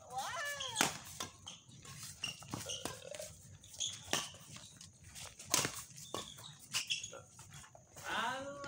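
Badminton doubles rally: rackets striking the shuttlecock in sharp smacks about every second or so. A short cry that bends in pitch comes in the first second.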